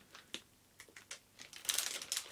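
Faint, sparse crinkles and ticks from a plastic cable bag being handled. There are a few isolated clicks, and they grow busier near the end.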